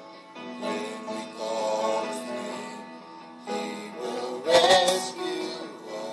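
A gospel song performed live: a woman sings solo into a microphone over instrumental backing, swelling to its loudest a little past four seconds in.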